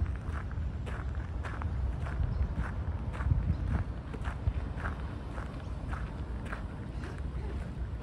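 Footsteps of a walker on a compacted gravel path, about two steps a second, over a steady low rumble.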